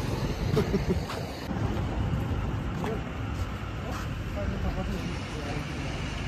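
Steady low rumble of a motor scooter's engine and road noise while riding along a rough dirt road.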